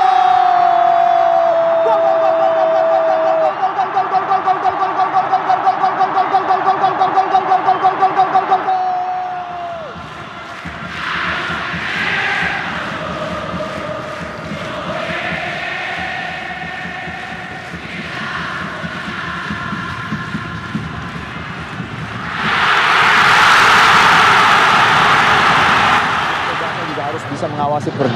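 A TV football commentator's long drawn-out goal shout, one held note sliding slowly down in pitch with a regular wavering pulse, lasting about nine seconds over stadium crowd noise. After it comes quieter crowd sound with some chanting, and a loud rushing swell of noise about three-quarters of the way in.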